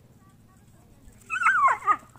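An animal's brief high-pitched whine, wavering and then falling in pitch, lasting about half a second a little over a second in.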